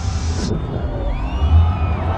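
Film soundtrack with a deep, steady bass rumble. A hiss cuts off suddenly about half a second in, and faint sliding high tones follow.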